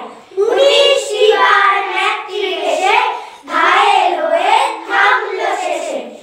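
A group of young girls reciting a Bengali poem in unison, chanting it in two long phrases with a short breath between them about three and a half seconds in.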